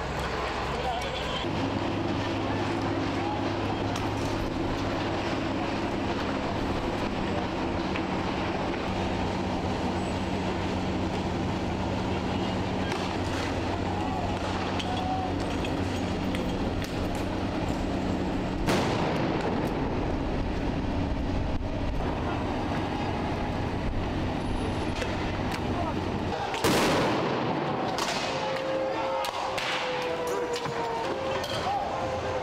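Riot-street din with a steady low mechanical hum, broken by two loud blasts about eight seconds apart, each echoing briefly. The blasts are grenades going off during the clash between riot police and protesters.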